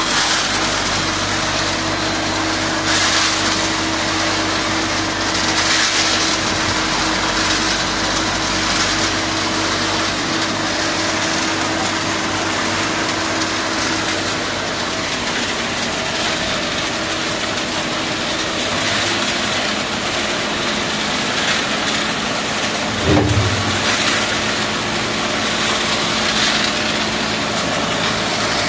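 Self-loading concrete mixer's diesel engine running steadily under load as the machine works its loading bucket and moves, with a steady hum that drops away about halfway through. A brief louder knock comes about 23 seconds in.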